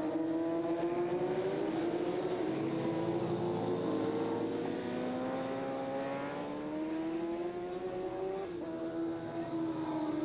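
Racing motorcycle engines at high revs, a Honda and a Kawasaki running close together. Their overlapping notes fall and rise several times as the bikes slow for corners and accelerate away.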